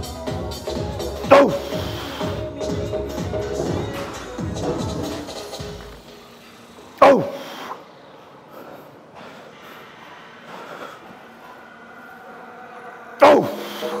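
Background music with a beat, broken by three loud, short shouts of effort about six seconds apart, each dropping sharply in pitch. They come from a lifter straining through heavy hack-squat reps.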